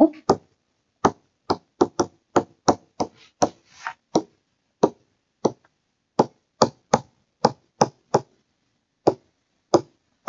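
Stylus tip tapping on a tablet screen while handwriting, a string of about twenty sharp, irregular clicks, two or three a second, with a short pause near the end.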